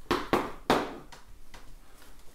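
Three sharp knocks in quick succession in the first second, then quieter handling noise: the button accordion being handled and set upright after its treble grille cover is taken off.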